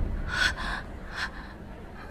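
A woman's short breathy gasp, followed about a second later by a fainter breath.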